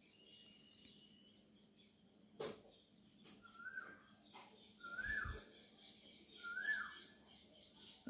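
A bird chirping faintly, three short, alike notes that each rise and then drop. A single click comes about two and a half seconds in and a brief low thump just after five seconds.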